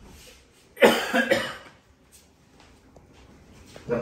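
A person coughing: a short loud burst of two or three coughs about a second in.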